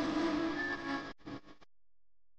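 Bhojpuri song music fading out and cutting off about a second in, with a brief faint tail dying away soon after.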